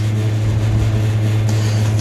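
A steady, unchanging low drone with a faint hiss above it: a sustained background bed that carries on under the narration.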